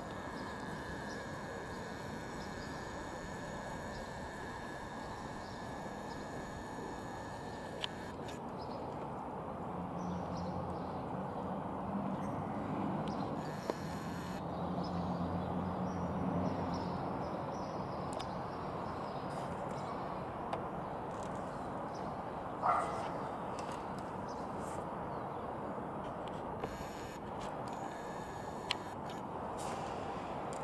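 Steady outdoor background noise, with a low hum that swells for several seconds in the middle and a single short, sharp sound about two-thirds of the way through.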